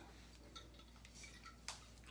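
Near silence with a few faint ticks and one sharp click near the end, from the cap of an apple cider vinegar bottle that is hard to open being worked at by hand.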